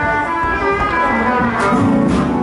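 Music played by a band, with guitar and a double bass.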